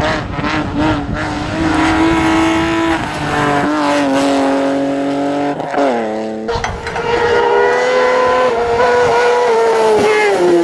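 Race car engines running at high revs on a hillclimb. The first engine holds a steady high note, then its pitch drops sharply about six seconds in. A second engine then takes over with another high, steady note.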